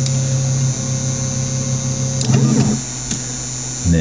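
Anet A8 3D printer homing its axes: stepper motors drive the print head and bed with a steady tone over a constant low hum. The tone stops a little after two seconds. A short rising-and-falling whir follows, then only the hum remains.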